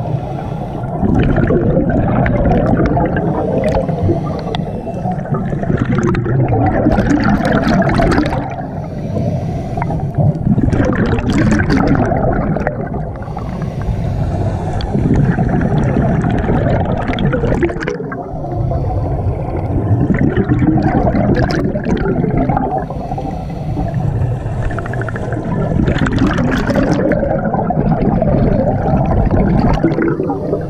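Scuba diver breathing through a regulator underwater: long rushing bubble bursts of each exhale, broken every few seconds by a short quieter gap for the inhale.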